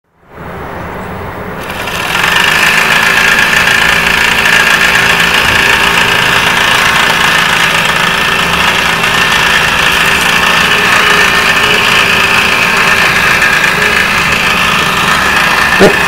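Miniature live-steam engine on a model motorcycle being started and running fast, a steady hissing rattle that gets much louder about two seconds in as it picks up speed.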